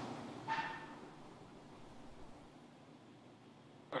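Faint steady hiss fading to near silence, with a brief faint tone about half a second in.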